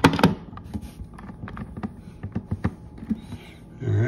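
Scattered clicks and knocks of handling as a lamp's power plug is pushed into a portable power station's AC outlet and its cord is moved about, with the loudest knock at the very start.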